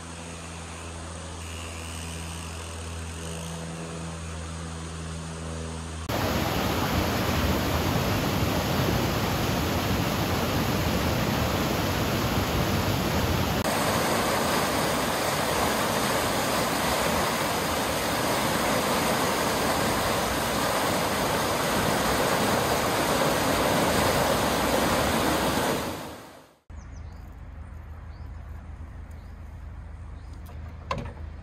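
Water rushing through the opened paddles of a lock's top gate as the lock chamber fills: a loud, steady rush that starts abruptly about six seconds in and fades away a few seconds before the end. Before it, a low steady hum.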